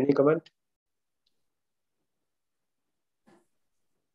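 A man's voice over a video call, half a second of speech at the start, then dead silence broken only by one faint, short sound a little after three seconds in.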